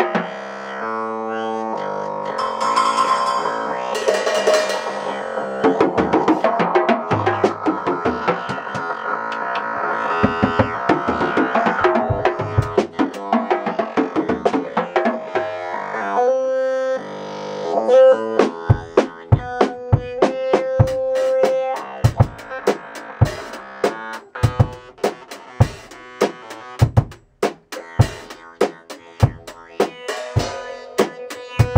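Live funk jam: keyboards played through talkboxes, giving a vowel-like, talking synth tone, over an acoustic drum kit. In the second half the drums settle into a steady beat of kick and snare under sustained keyboard notes.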